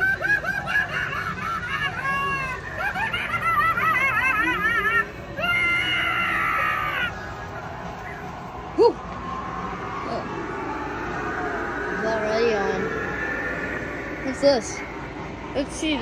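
Halloween animatronic's recorded voice playing warbling, wavering laugh- and scream-like sounds for about seven seconds, then dropping to quieter sounds with a sharp click about nine seconds in.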